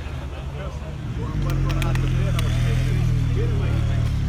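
A motorcycle engine idling steadily, getting markedly louder and closer about a second in, over the chatter of a crowd.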